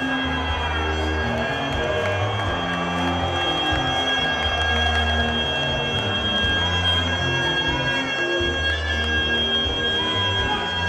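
Live Afrobeat band playing: a repeating bass line with drums under long held high tones from the horns and organ, with crowd noise beneath.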